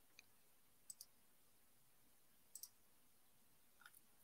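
Near silence broken by a few faint computer mouse clicks, including two quick double clicks about a second and about two and a half seconds in.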